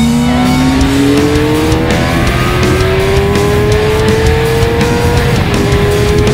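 Suzuki sport bike engine pulling hard at motorway speed, its note climbing steadily, with one upshift about five and a half seconds in where the pitch dips and starts climbing again; heavy wind rush beneath.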